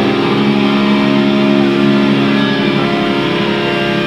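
Distorted electric guitars ringing through amplifiers on a loud, sustained chord, holding steady with little rhythm.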